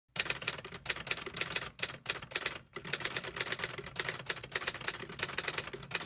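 Typing sound effect: a rapid, steady run of key clicks with a few short pauses, going with text being typed onto the screen.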